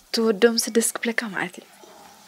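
Speech only: a woman talking for about a second and a half, then a pause.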